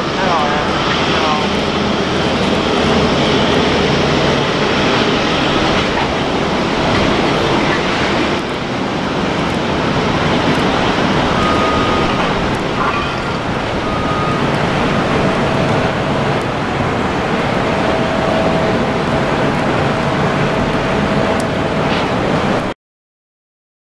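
Airbus A350-900 jet airliner taxiing, its Rolls-Royce Trent XWB turbofans running at low taxi power with a steady jet noise.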